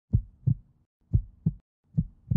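Heartbeat sound effect: low double thumps in a lub-dub rhythm, about one pair a second. Two pairs sound, and a third begins at the very end.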